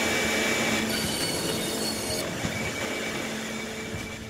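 Bandsaw running as a wooden pallet runner is fed through it: a steady whir with a thin high tone, easing off gradually toward the end.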